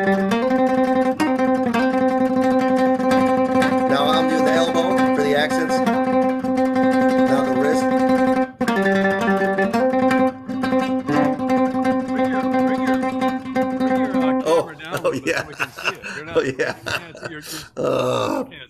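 Nylon-string classical guitar picked with the fingers alone, one note repeated rapidly and evenly so that it runs almost like a sustained tone, dropping briefly to a lower note twice. Near the end the steady picking breaks off into laughter.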